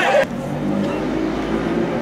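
Shouting voices that cut off abruptly a quarter-second in, then open-air ambience with a steady low hum and faint distant sound.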